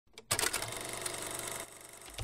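Short intro sound effect: a rapid run of fine mechanical clicks that starts abruptly and cuts off after about a second and a half.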